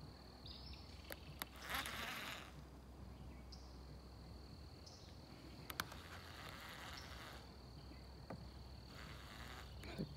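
Quiet pond-side ambience: a faint, steady high-pitched insect drone. Over it come a few light clicks and two short whirring rushes from a baitcasting reel being cast and worked.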